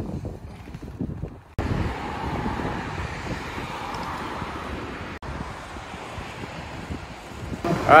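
Wind buffeting the microphone over the steady noise of street traffic. It starts suddenly about a second and a half in and cuts out briefly around five seconds.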